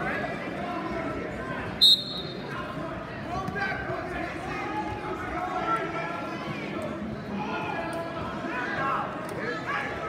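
Voices and chatter echoing in a gymnasium, with one short, sharp referee's whistle blast about two seconds in, starting the wrestling bout.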